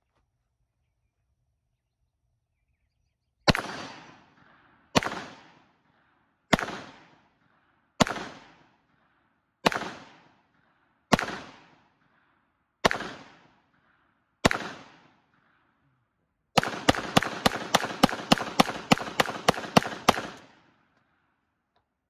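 Masterpiece Arms MPA30T 9mm semi-automatic pistol firing: eight single shots about a second and a half apart, each with a short ringing tail. Then a fast string of about fourteen shots, some four a second, that empties the magazine.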